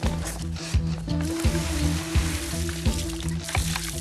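Water pouring out of plastic buckets and splashing onto a shrub and the concrete beneath it, starting about a second in. Background music with a steady beat plays under it.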